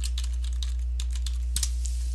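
Computer keyboard being typed on, a quick run of key clicks, with a steady low electrical hum underneath.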